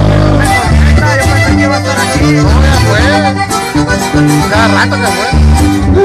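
Live norteño band playing without singing: a button accordion carries the melody over guitar and a bass line that moves note by note.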